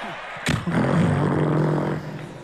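A soft noise of the stand-up audience reacting. About half a second in, a person's voice cuts in abruptly with a loud, steady-pitched held sound, like a drawn-out hum or "mmm", lasting about a second and a half.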